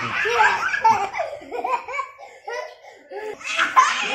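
Children laughing hard in high-pitched bursts, dipping briefly in the middle and rising to a loud burst near the end.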